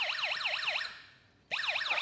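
Electronic siren tone from a Snap Circuits sound circuit, sweeping up and down about five times a second. It fades out a little under a second in and starts again about half a second later.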